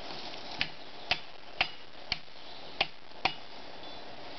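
Six sharp knocks, roughly half a second apart, from a felling wedge being hammered into the cut at the base of a tree.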